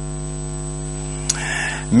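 Steady electrical mains hum with a stack of even overtones, like a buzz on the audio line; a single short click about a second and a quarter in.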